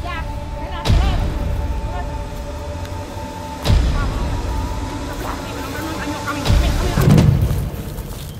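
Background soundtrack music with held notes, punctuated by deep booming hits, four in all.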